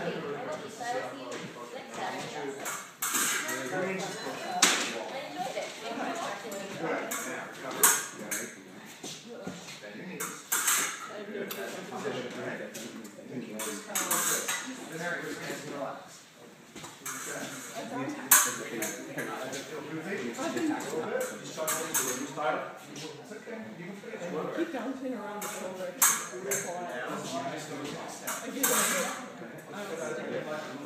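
Épée blades clicking and clinking against each other at irregular moments as they engage, with a few sharper hits standing out, over indistinct talking in the background.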